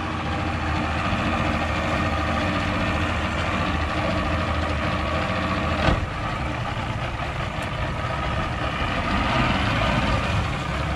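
Mercury 200 two-stroke V6 outboard running steadily at idle, with a single sharp knock about six seconds in.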